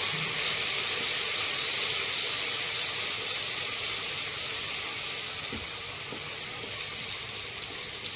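Chopped onions sizzling as they fry in hot oil in a non-stick pan, a steady hiss that eases a little toward the end.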